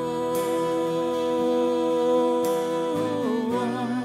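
Live worship band music in an instrumental passage: a violin holds a long, steady note over a sustained accompaniment, then slides to a new note about three seconds in.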